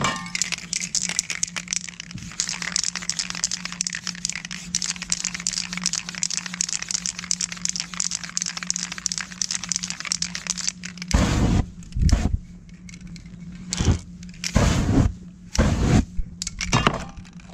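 An aerosol spray-paint can hissing steadily as black paint is sprayed. From about eleven seconds in come five loud whooshes as the wet paint is set alight and flames flare up.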